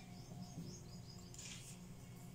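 Faint, steady low hum with faint, short, high chirps in the first second and a brief soft hiss about one and a half seconds in.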